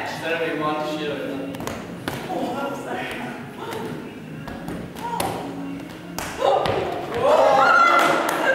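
Women's voices and laughter in a large gym, loudest near the end, with scattered dull thuds of balls being caught and hitting the floor.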